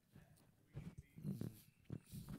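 A couple of faint, short throat sounds from a man, a little under a second in and again around the middle, between long quiet gaps.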